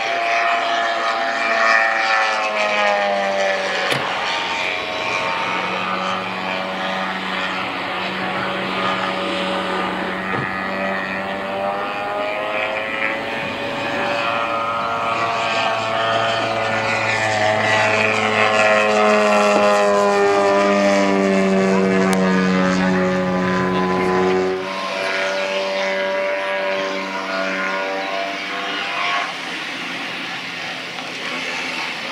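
Radio-controlled aerobatic model airplane's combustion engine and propeller running at high power, its note rising and falling through the manoeuvres. The sound changes abruptly about 25 seconds in, when the lower rumble drops away.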